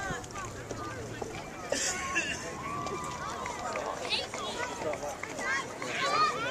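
Indistinct voices of players and spectators talking and calling out around the field, with no clear words.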